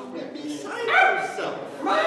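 A single high-pitched cry lasting about a second, rising and then held, amid stage voices.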